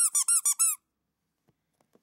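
Dadandan squeeze-toy figure squeaking as its belly is pressed: a rapid run of short rising-and-falling chirps that stops within the first second.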